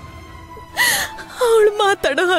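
A woman crying: a sharp sobbing gasp about a second in, followed by a wavering, tearful voice, over soft background music.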